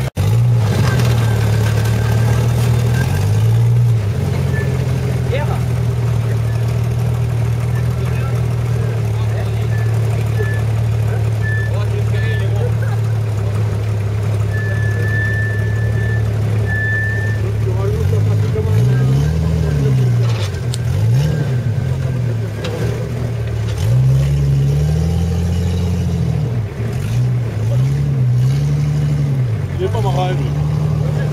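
Off-road 4x4 engine running at a steady idle, then revved up and down again and again as the vehicle crawls through mud and climbs out.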